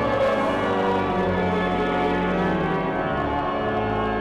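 Cathedral pipe organ playing full, held chords with many notes sounding at once, steady and unbroken, in a long reverberant building.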